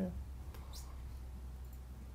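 A short pause in a man's talk: a steady low hum of room tone with faint hiss, and one faint, brief high sound, like a breath or a mouth click, about three quarters of a second in.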